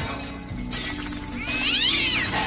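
Background music with a steady low drone and a hiss that swells partway through. About one and a half seconds in, a high wavering cry rises and then falls away.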